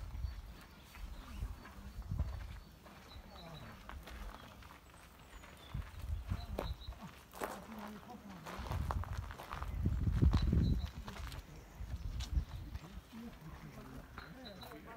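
Footsteps of a person walking outdoors, with irregular low thuds and rumbles, loudest a little past halfway, and a few faint high chirps.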